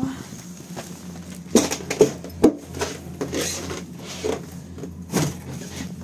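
A metal shop door knocking and scraping against packed snow on its threshold as it is pushed, with three sharp knocks in quick succession about a second and a half in and another about five seconds in. The snow in the doorway is keeping the door from closing.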